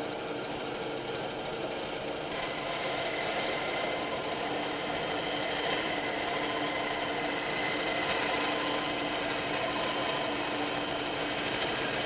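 Bandsaw running steadily while a softwood board is fed through the blade, cutting a bevelled edge. A higher whine joins about two seconds in, and the sound grows a little louder as the cut goes on.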